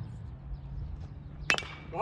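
A bat hitting a pitched baseball: one sharp crack about one and a half seconds in, with a brief ringing tail.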